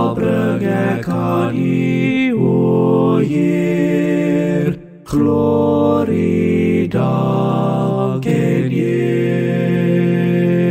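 Four-part a cappella vocal harmony, all four parts sung by one man and layered by multitrack, singing an Afrikaans hymn in slow, held chords. There is a brief breath pause between phrases about five seconds in.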